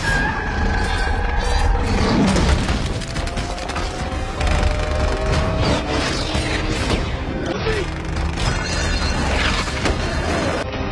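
Action-film soundtrack: a score playing under a dense mix of crashes, metal impacts and explosions.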